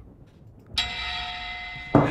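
A short music sting from a film title card: a sudden bell-like metallic ringing that starts under a second in, holds steady for about a second, and is cut off abruptly.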